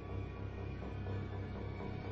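Symphony orchestra playing contemporary classical music: a dense, sustained texture held steady, weighted in the low register.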